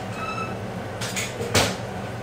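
Kitchen handling sounds over a steady low hum: a short faint squeak just after the start, a couple of light clicks, then a sharper knock about one and a half seconds in, like a cabinet door or kitchenware being set down.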